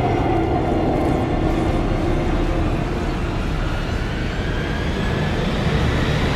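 Film-trailer sound design: a loud, dense rumbling roar with no break, a tone sinking early on and another rising slowly in the second half, laid over the score.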